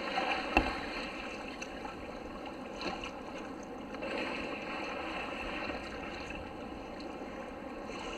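Water lapping and sloshing against a kayak hull, a steady wash, with one sharp knock about half a second in.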